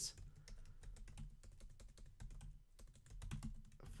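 Typing on a computer keyboard: a quick, faint run of key clicks, with a brief pause about two and a half seconds in.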